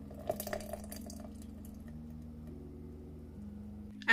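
Thick green smoothie pouring from a blender jar into a glass pitcher, with a few soft splats and glass clicks in the first second or so, over a steady low hum.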